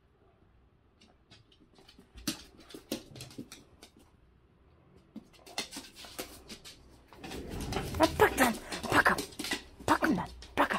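Dogs playing tug with a plush toy on a hard floor: scattered sharp clicks and scuffles, then from about seven seconds in a dog vocalizing in play, in sounds that rise and fall in pitch.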